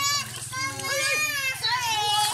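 Children's high-pitched voices calling out and squealing in play, in a few drawn-out calls, over a steady low hum.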